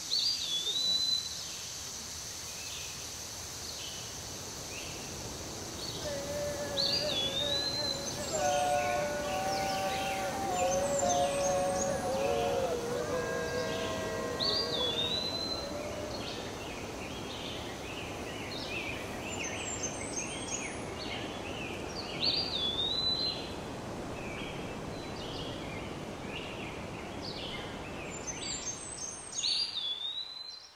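Evening countryside ambience: a steady high insect hiss with scattered bird chirps, and one bird repeating a short slurred whistle about every seven seconds. Faint sustained tones sound in the middle stretch.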